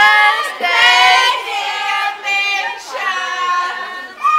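Several teenage girls singing together, holding and sliding between notes.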